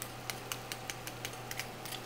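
Cubes of pork carnitas sizzling in hot lard in a roasting pan fresh from the broiler: a steady hiss with irregular crackles and pops. It is the sound of the fat crisping the meat's surface.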